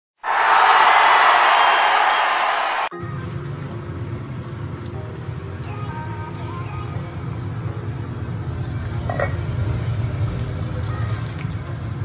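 A short, loud opening sound of under three seconds cuts off abruptly. It is followed by a steady low kitchen hum with a few light metallic clinks of cookware on a stove.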